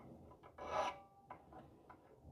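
Fret end dress file scraping lightly across the ends of guitar frets that were left sharp: one main rasping stroke about half a second in, followed by a few short, faint scrapes.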